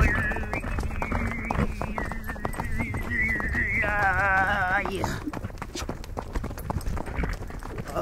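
Tuvan throat singing (xöömei) performed on horseback: a low drone with a whistling overtone melody high above it, then a held, wavering tone about four seconds in, after which the singing mostly drops away. A horse's hooves clip-clop all through.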